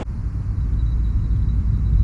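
A loud, steady, deep rumble with almost nothing above the bass, cut in sharply at the start and cut off abruptly at the end.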